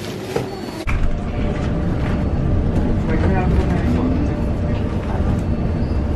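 Steady low engine and road rumble heard from inside a bus, starting suddenly about a second in, with faint voices under it.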